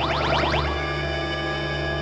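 Electronic cartoon sound effect for the Flash's super-speed spin: a rapid run of rising sweeps that, about two-thirds of a second in, settles into a steady held electronic tone.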